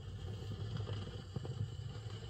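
Stylus running in the silent lead-in groove of a spinning Sun Records 45 rpm vinyl single: surface hiss with scattered crackle and a low rumble.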